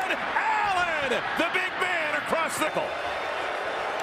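A television play-by-play commentator speaking over steady stadium crowd noise.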